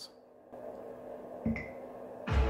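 Quiet room tone, with a single soft low thump and a short high blip about a second and a half in.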